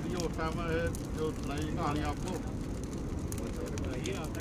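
Indistinct voices of a group of men talking, clearest in the first two seconds, over a steady low rumble.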